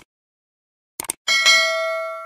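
Subscribe-button animation sound effect: sharp mouse clicks at the start and again about a second in, then a notification bell ding. The ding is the loudest part, a bright ringing of several steady tones that holds and slowly fades.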